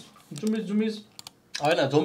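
Two quick clicks of a computer mouse a little over a second in, between a man's short spoken phrases.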